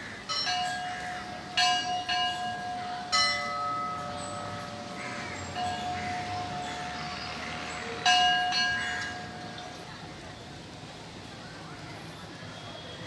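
Hindu temple bells struck about five times, each strike ringing on in a sustained metallic tone; the loudest strike comes about eight seconds in, and the ringing dies away after it.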